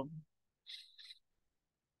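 Near silence on the call line after a spoken word ends, broken by two faint, brief high-pitched sounds under a second in.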